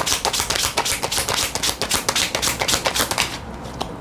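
Deck of tarot cards being shuffled in the hands: a rapid run of papery clicks and flicks that stops a little over three seconds in.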